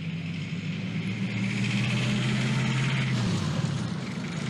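Motor vehicle engine running close by, a steady low drone with a haze of road noise over it, which drops away shortly before the end.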